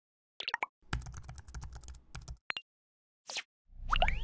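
Animated logo-intro sound effects: a few quick pops, a low crackling rumble for about a second and a half, a short whoosh, then bright rising sweeps over a low rumble near the end.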